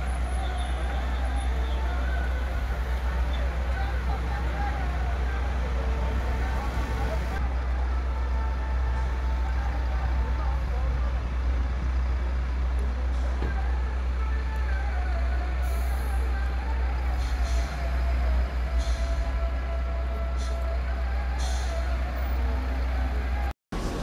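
Steady low drone of idling fire truck engines. Indistinct voices are talking over it, and there is a brief dropout just before the end.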